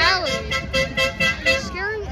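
A horn tooting in a quick run of short blasts, about five a second, for a second and a half, with swooping rising-and-falling tones around it.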